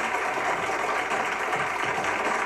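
Studio audience applauding steadily, a dense even clatter of many hands clapping.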